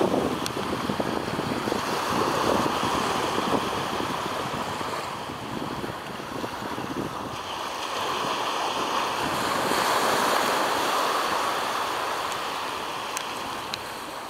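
Sea surf washing onto the shore, swelling and easing twice, with wind rumbling on the microphone.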